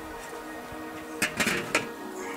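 Background music, with a quick cluster of three metallic clanks a little past a second in as the metal lid of a Stok kettle charcoal grill is lifted off.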